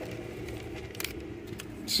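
Low steady hum of a car's cabin, with a few faint short clicks and crinkles of a paper sandwich wrapper being handled.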